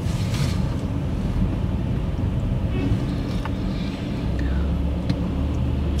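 Car engine and road rumble heard from inside the cabin as a learner driver pulls away at a roundabout. A steadier low engine hum comes in about four seconds in.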